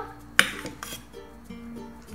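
Quiet background music of short held notes, with one sharp clink of kitchenware about half a second in as cooked quinoa is added to a glass mixing bowl.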